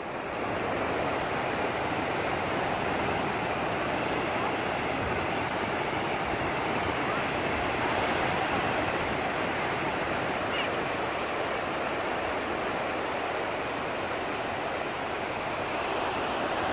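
Ocean surf breaking and washing up the beach: a steady, even rush of waves.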